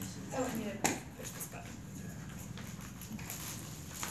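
Quiet room with faint, indistinct talk and one sharp knock about a second in.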